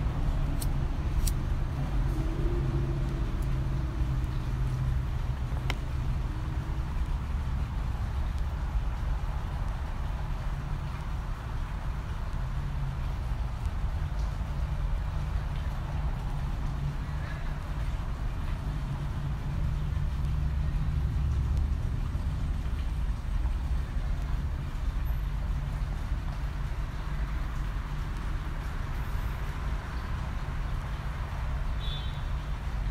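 Steady low rumble of outdoor background noise like distant road traffic, with a few faint clicks in the first few seconds.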